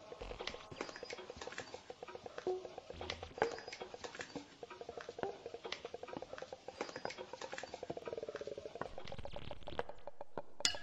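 Dense, rapid clicking and scratching with a rattling, creak-like tone running through it that dips in pitch about eight seconds in.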